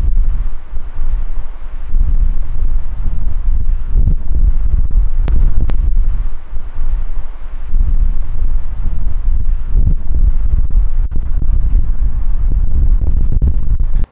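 Loud wind buffeting on the microphone: a heavy low rumble that surges and dips like gusts. Two sharp clicks sound about five and a half seconds in.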